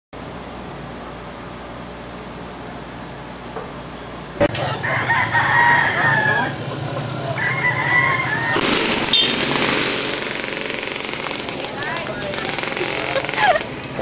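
A rooster crowing twice in drawn-out calls, after a few seconds of low steady hum, followed by a loud rushing noise near the middle.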